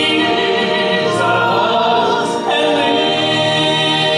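A man and a woman singing a hymn as a duet, amplified through microphones, in long held notes that move to new notes about two and a half seconds in.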